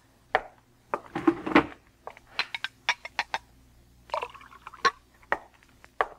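Radio-drama sound effects of a bottle and glasses being fetched from a cabinet: scattered glass clinks and knocks, a quick string of them a couple of seconds in, and a brief pour of liquid about four seconds in.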